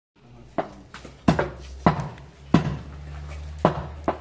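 Meat cleaver striking meat and bone on a wooden chopping block: about six sharp chops at uneven intervals, each with a brief ringing tail, over a steady low hum.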